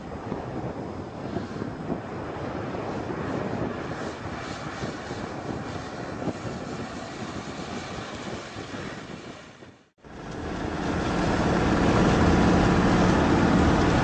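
A 4x4 off-road vehicle driving across desert gravel, heard from outside as a steady engine-and-tyre rumble as it approaches. After a sudden cut about ten seconds in, it becomes louder, steady engine drone and tyre noise heard from inside the cab on a dirt track.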